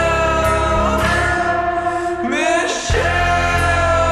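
Slowed-down, reverb-heavy rock song with drawn-out, reverberant sung vocals over guitar and bass. The bass briefly drops out a little past halfway, then comes back in.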